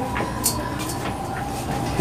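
Steady background noise of a busy shop, with a constant hum and a faint click about half a second in.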